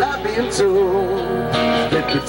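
Live band playing a rock-country song: acoustic and electric guitars with bass and drums, and a wavering, vibrato melody line held over them, sung between lyric lines.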